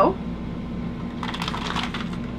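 Plastic sausage packaging crinkling in quick small clicks, starting a little past halfway, over a steady low hum.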